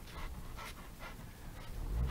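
Golden retriever panting close by in quick, even breaths, a few a second.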